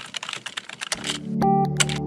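Rapid computer-keyboard typing clicks for about the first second, then synthesizer music comes in with a held low chord and a melody on top.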